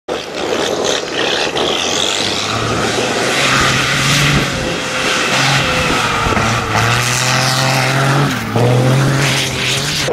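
Hino rally truck's diesel engine pulling hard through soft sand, its pitch stepping up and down with the throttle. The note climbs, drops sharply just after eight seconds and climbs again, with the hiss of tyres and sand over it.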